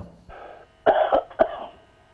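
A person coughing three times over a telephone line: a softer cough, then two sharper ones. The caller says they are unwell.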